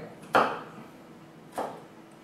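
Nakiri knife cutting thin stacked carrot slices into julienne on a plastic cutting board: two separate chops, each a sharp tap of the blade reaching the board, a little over a second apart.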